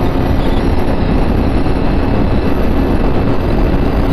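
TVS Apache RTR 160 4V's single-cylinder engine held at full throttle near its top speed, about 120 km/h, under a heavy, steady rush of wind and road noise.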